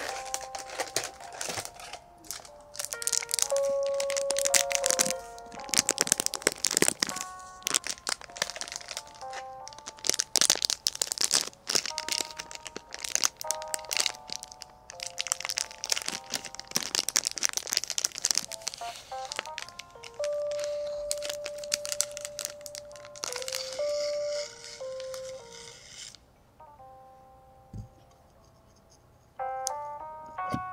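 Dense crinkling and crackling handling sounds over soft background music with a simple melody of held notes; the crinkling stops about 26 seconds in, leaving the music on its own, quieter.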